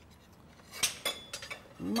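A few light clinks of tableware, about a second in and again shortly after.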